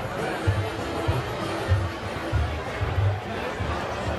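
Music with a steady bass beat playing over the chatter of a large street crowd.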